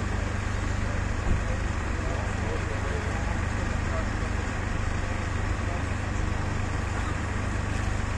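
Steady low rumble of an idling vehicle engine and city street traffic, with no distinct events.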